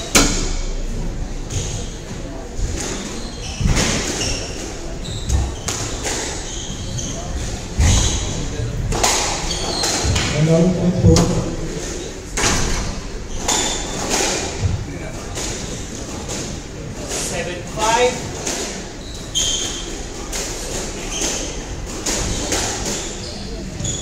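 A squash rally: the ball is struck by rackets and hits the court walls again and again as sharp thuds at an uneven pace, among short high squeaks of court shoes on the wooden floor. The rally ends in a point won.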